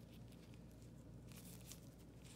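Near silence: a faint low room hum, with a few faint ticks and rustles from gloved hands handling the crown and its holder about a second and a half in.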